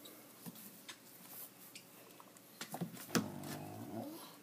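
Faint, scattered wet clicks from a Dumeril's monitor swallowing a mouthful of ground turkey and egg, with a few sharper clicks a little before three seconds in and the loudest one just after.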